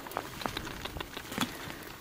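Books and binders being shifted by hand on a shelf: a run of soft, irregular taps and light rustles.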